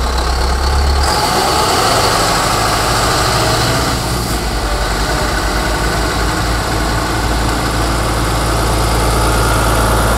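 Diesel engines of a Scania rotator truck and a Volvo heavy recovery truck running at low speed as the trucks roll slowly past, a steady low drone with a slight change in engine note about a second in.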